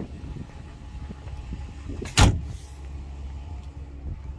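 A single loud thump about two seconds in as a part of the pickup's cab is shut, over a low, steady rumble of handling and wind.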